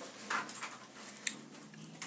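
A quiet pause in a small room, with faint murmurs and a single sharp click a little past the middle.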